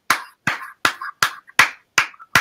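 Hand clapping in a steady rhythm of sharp claps, a little under three a second, as praise in worship.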